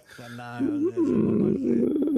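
Speech: a voice drawing out a long hesitation sound, "uhh", in the middle of a sentence.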